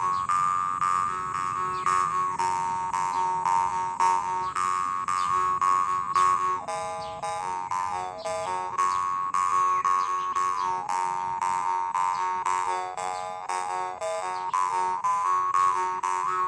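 Copper jaw harp played in a steady rhythm of plucks over one unchanging drone, with an overtone melody that shifts from note to note as the mouth reshapes.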